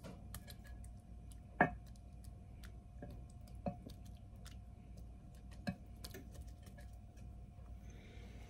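Light clicks and taps of a pastry brush against a small egg-wash bowl and loaf pan as egg wash is brushed onto bread dough. Three clicks stand out, about two seconds apart, over faint room tone.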